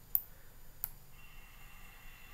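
Two sharp computer clicks about 0.7 seconds apart, as a text box is duplicated and dragged into place on screen.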